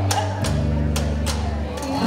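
Live acoustic western-swing band playing between vocal lines: short washboard scrapes and taps over steady bass notes and strummed acoustic guitar. The bass note changes about half a second in and again near the end.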